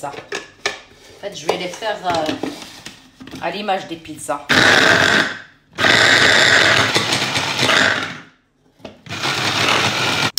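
Electric food chopper run in three short pulses, each starting and stopping abruptly, as bell peppers are chopped coarsely in its bowl. The middle run is the longest.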